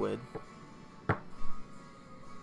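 A small click, then a sharp knock about a second in, as a metal vape mod is handled and set down on a table.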